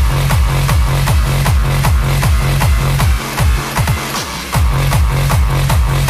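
Hardstyle dance music from a DJ mix, driven by a heavy kick drum that falls in pitch on every beat, about three hits a second. The kick drops out about three seconds in and comes back about a second and a half later.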